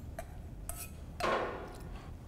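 Light clinks of a stainless steel measuring cup and spoon against a stainless steel mixing bowl, then a short pour of water from the cup onto the flour about a second in.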